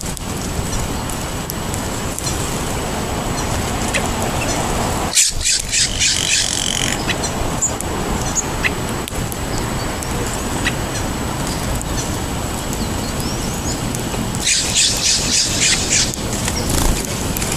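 Flock of birds feeding on seed spread on pavement, with two short bursts of rapid, harsh bird calls, one about five seconds in and one near the end, over a steady low rumble.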